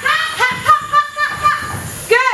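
A woman's high voice singing wordless "da-da" syllables to mark the rhythm of the dance moves, a quick string of short held notes that step up and down in pitch.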